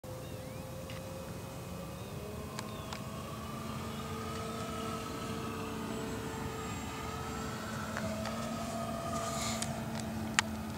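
A distant engine drones steadily, its pitch wavering slowly up and down, with a few light clicks and a brief hiss near the end.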